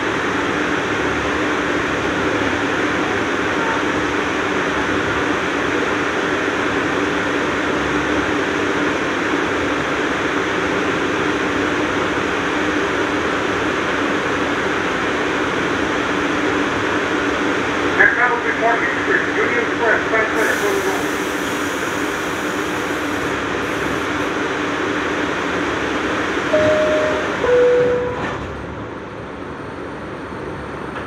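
R62A subway car running through a tunnel, with a steady rumble and rail noise. Voices are heard briefly about 18 seconds in, and a two-note chime stepping down in pitch sounds near the end, after which the running noise drops.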